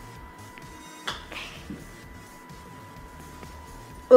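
A putter strikes a golf ball on carpet with one sharp click about a second in, followed by a short, soft rustle as the ball rolls.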